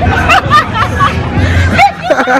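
Young women laughing and chattering over background music.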